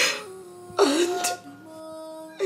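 A woman sobbing in two short bursts, one at the start and one just under a second later, over soft background music of held chords.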